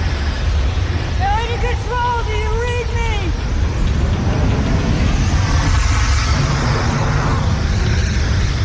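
Sci-fi film sound effects of a space pod plunging through a wormhole: a loud, continuous low rumble with rushing noise, and a woman's wavering cry from about one to three seconds in.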